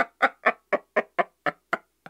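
A man laughing hard: a steady run of short "ha" sounds, about four a second, slowly growing quieter.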